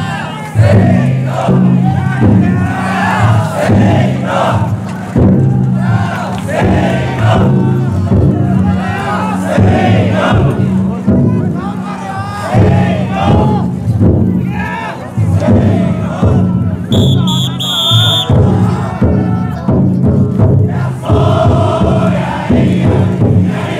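Large crowd of taikodai bearers shouting and chanting together over the beating of the float's big taiko drum. A brief shrill, high sound cuts through a few seconds before the end.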